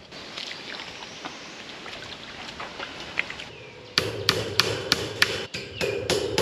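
A hammer driving fence staples to tack a wire livestock panel back onto a wooden post: after a few seconds of faint rustling, quick blows start about four seconds in, roughly three a second, with the panel ringing under them.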